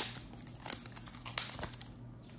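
Clear plastic wrapping being pulled off a roll of washi tape by hand, crinkling in a few sharp crackles, the loudest right at the start.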